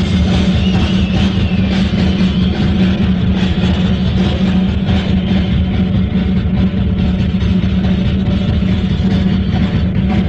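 Live rock concert recording of an instrumental solo section: a drum kit struck with rapid strokes over a loud, dense low rumble that carries on unbroken.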